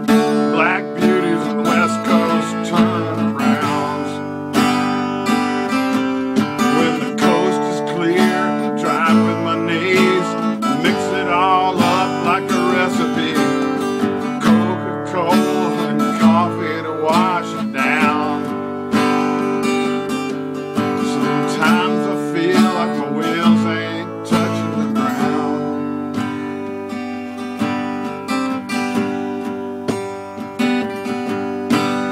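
Acoustic guitar strummed steadily in an instrumental break between verses of a country song, with chords ringing under a regular strumming rhythm.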